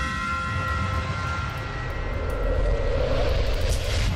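Animated logo-intro sound effect: a deep, steady rumble under ringing tones that fade over the first second or two, swelling into a whoosh near the end.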